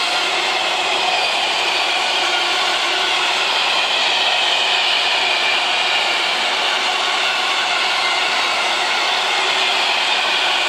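Intermodal freight train wagons rolling past, a steady loud rush of wheel-on-rail noise with faint high whining tones that slowly fall in pitch.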